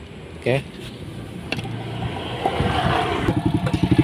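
Motorcycle engine running at idle, a rapid even beat that grows louder from about halfway through.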